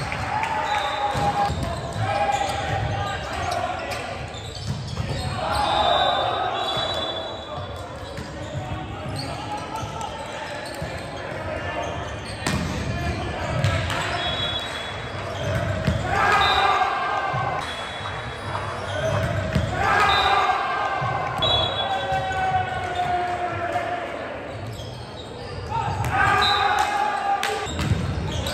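Indoor volleyball rallies on a hardwood gym floor: the ball thumping off hands and the floor, sneakers squeaking, and players shouting to each other.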